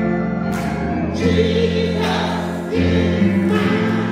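Church choir singing a gospel song with band accompaniment: a held bass line under the voices, with a few short cymbal-like splashes.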